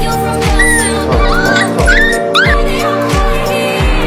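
Background music with a steady beat, over which a puppy whimpers and yelps several times: short high cries that rise and fall in pitch, bunched in the first half of the stretch.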